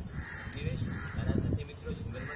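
Harsh cawing bird calls, repeated, heard with a person's voice.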